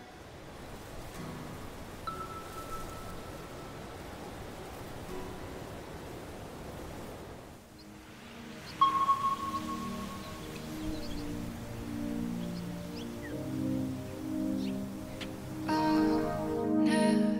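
Soft background music: a quiet, airy wash with a faint chime-like note, then about nine seconds in a clear bell-like note rings out and a gentle melody of low, sustained notes builds.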